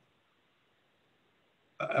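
Near silence, a gated call line, until a man's voice starts speaking near the end.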